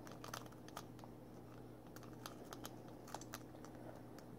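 Faint, irregular metallic clicking of a lock pick and tension wrench working the pins of a padlock, several small clicks a second at uneven spacing. The lock is still not opening: the last pin will not set.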